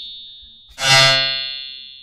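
Synthesized bowed-string note from an Empress Zoia physical-modelling patch, in which filtered noise excites a Karplus-Strong delay-line resonator with the filter resonance set high, almost self-resonating. The fading tail of one note is followed, under a second in, by a new note that swells quickly, then dies away slowly with a bright high ringing.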